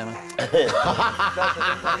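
People laughing, a quick run of chuckles mixed with a few spoken words.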